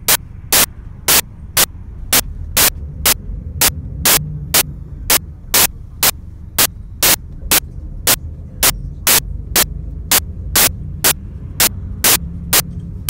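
Sharp click-like bursts repeating evenly about twice a second, each as loud as the others, over a steady low rumble.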